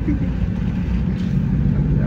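Steady low rumble of a moving vehicle's engine and road noise, heard from inside the cabin.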